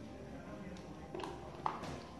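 Double-stacked rola bola, a board on large-diameter tube rollers, shifting under a balancing rider's small corrections: a few light knocks about a second in and a sharper click a little later.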